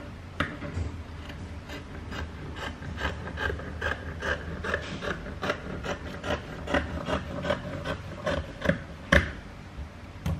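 Scissors snipping through a sheet of soft packaging foam: a steady run of short snips, about two to three a second, the loudest about nine seconds in.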